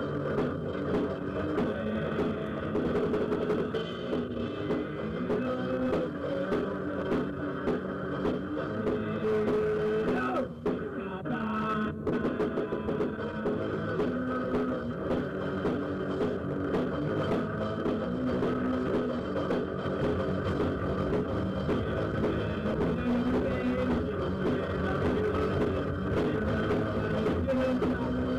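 Rock band recording: electric guitar, bass and drum kit playing together, with a brief drop-out in the music about ten seconds in.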